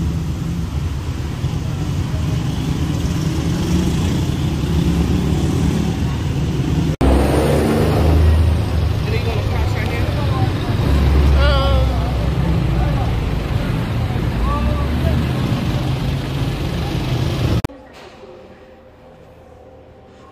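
Street traffic: the engines of a minibus and motorcycles running in a slow, crowded street, with people's voices in the background. It cuts off suddenly to a quiet room hum about two seconds before the end.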